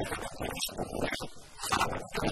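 Speech: a man talking in Arabic.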